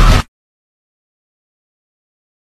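A loud mix of music and voices cuts off abruptly about a quarter second in, followed by dead digital silence.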